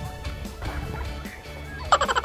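A turkey gobbling: a rapid, pulsing call that starts suddenly near the end, over faint background music.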